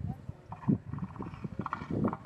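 Northern elephant seal vocalizing: a low, guttural call made of a rapid run of pulses that starts abruptly.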